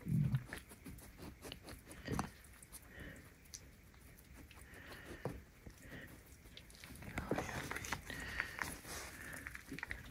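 Nigerian Dwarf goat biting and chewing a hand-held carrot: faint, irregular crunches and clicks, coming thicker over the last few seconds.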